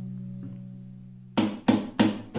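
Acoustic guitar: a chord rings out and slowly fades, then is followed by quick, sharp strums about three times in the last half-second.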